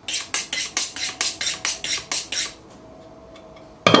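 Kitchen knife being honed on a sharpening steel: quick, sharp metal-on-metal strokes, about five a second, for two and a half seconds, then they stop.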